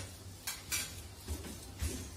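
Four short knocks and scrapes of kitchen utensils against a kadai of thick besan curry while lemon juice is squeezed in.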